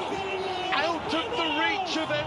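A man's voice speaking: football commentary over the broadcast's steady background noise.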